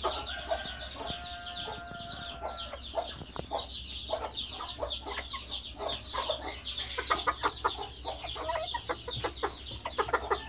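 Old English bantam chickens clucking and calling, over a dense, fast run of short high chirps and a steady low hum.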